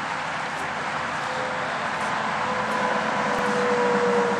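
A motor vehicle running, heard as a steady noise with a faint tone that sinks slowly in pitch from about a second in.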